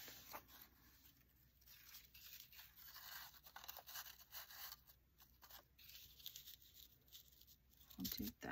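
Faint rustling of paper scraps being handled and laid on a card, with a few soft ticks and rustles scattered through otherwise near silence.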